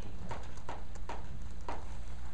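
Chalk striking a blackboard while drawing, four sharp taps about half a second apart, over a steady low room hum.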